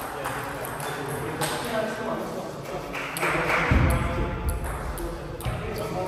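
Scattered sharp clicks of celluloid-style table tennis balls striking bats and tables, over people talking in the background.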